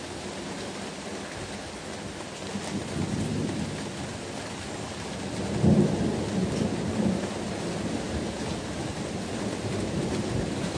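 Thunder rumbling during a sudden summer thunderstorm over a steady hiss of rain. One roll swells about two and a half seconds in, and the loudest peaks a little past halfway and then rolls on.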